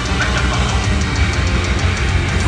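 Heavy metal band playing live at full volume: distorted electric guitars over a fast, even drum beat with about eight high hits a second.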